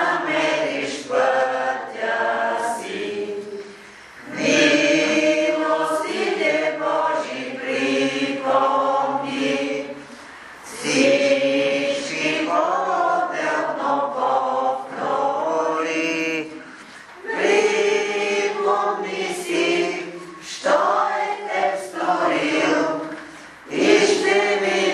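A group of voices singing a devotional chant in sustained phrases, each a few seconds long, with short breaks between them about every six seconds.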